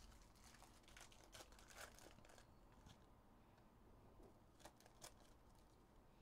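Faint crinkling of a foil trading-card pack wrapper being handled and torn open, with a couple of sharp ticks near the end.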